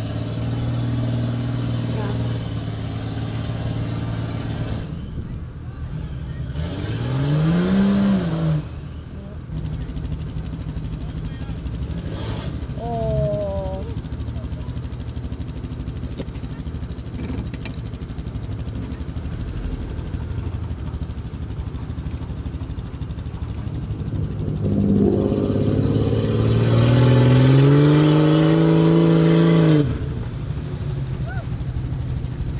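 Off-road vehicle engines: a steady low idle, with a short rev that rises and falls about eight seconds in. Near the end a Jeep's engine revs up loudly and holds as it drives close by, the loudest sound.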